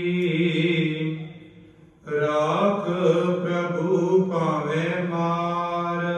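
Gurbani kirtan: a man's voice sings, holding a long note that fades away about two seconds in. He then takes up a new phrase that wavers in pitch and settles into another held note.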